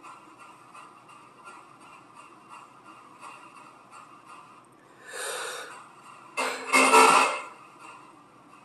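Two short breath-like hisses over a faint steady hum: a soft one about five seconds in, then a louder, longer one about a second and a half later.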